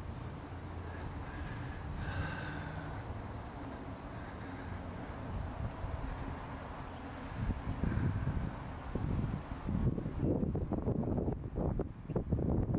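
Wind buffeting the microphone of a handheld camera outdoors, gusting harder and more irregularly in the second half, over a low steady background hum.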